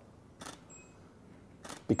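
Camera shutter firing: a short sharp click about half a second in and another near the end.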